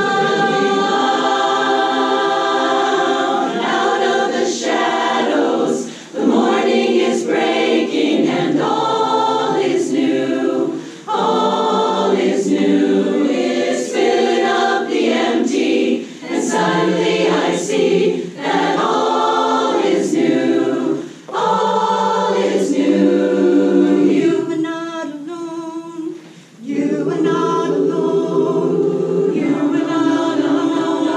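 Women's chorus singing a cappella, holding full sustained chords in phrases with brief breaks between them. The sound thins and drops in level for a couple of seconds about 24 s in, then the full chorus comes back in.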